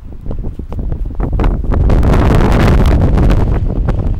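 Wind buffeting the camera's microphone, a constant low rumble that swells into a strong gust in the middle.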